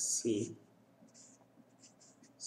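Felt-tip marker writing on paper: several short, faint scratching strokes. A man's voice speaks one word at the start.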